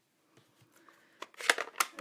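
A hush, then from about a second in a few sharp, light clicks and taps of stamping supplies being handled on the desk.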